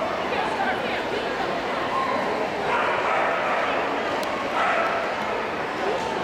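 A small dog barking several times as it runs, with the strongest barks about three and about five seconds in, over a steady background of voices in a large hall.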